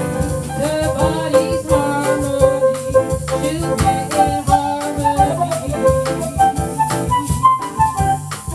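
Small jazz band playing a bossa nova live: a harmonica carries a held, stepping melody over piano, bass, drum kit and a shaker keeping a steady beat.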